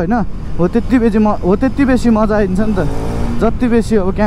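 A voice, talking or humming, over the low running noise of a KTM 390 Duke's single-cylinder engine accelerating on the road.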